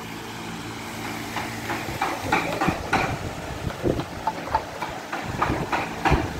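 A steady low machine hum, with irregular clicks and knocks from about a second and a half in.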